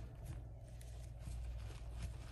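Quiet room tone with a low, steady hum; no distinct handling sounds stand out.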